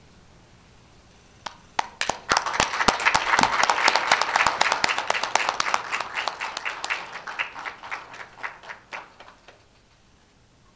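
Audience applauding: a few scattered claps about a second and a half in build quickly into full applause, which then thins out and dies away near the end.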